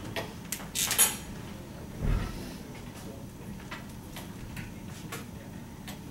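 Small handling sounds at a whiteboard: scattered light clicks, a brief scratchy rustle about a second in and a dull thump about two seconds in.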